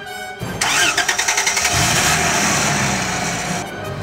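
Car engine cranking on the starter for about a second, catching and running, with music playing underneath.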